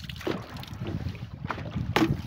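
Wind rumbling on the microphone over water lapping around a wooden canoe. A sharp splash near the end as a rubber bucket trap is dropped over the side into the river.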